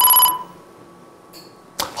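Electronic game-show beep, one steady pitched tone that cuts off about a third of a second in. It marks a letter being revealed on the word board.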